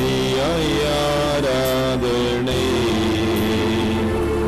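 Devotional church music: a voice holds and slides between notes over instrumental accompaniment with long-held low notes.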